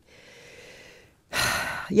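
A woman's breathing in a pause in speech: a faint, soft exhale, then a short, louder intake of breath about a second and a half in. A word begins at the very end.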